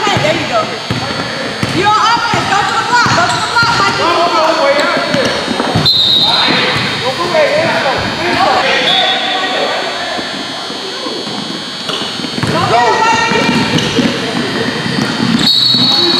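Sounds of a basketball game in a gym hall: a ball bouncing on the hardwood floor amid shouting voices of coaches and spectators. A brief shrill high tone sounds about six seconds in and again near the end.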